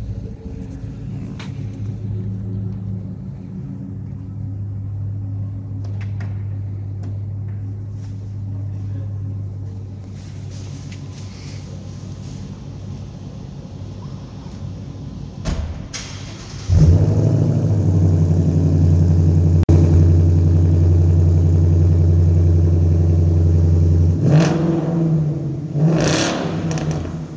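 A 2015 Ford Mustang with a muffler delete starts up about 17 seconds in with a sudden loud catch and settles into a loud, steady cold-start idle, with a short rev near the end. Before it starts, another car's engine idles more quietly.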